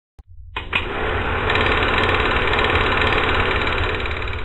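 Film projector sound effect: a rapid, even mechanical clatter over a low rumble, starting about half a second in.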